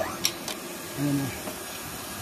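Water pump for flushing a chilled-water line, just switched on and running with a steady rushing hiss as it starts recirculating water and building line pressure. A couple of light clicks come in the first half second.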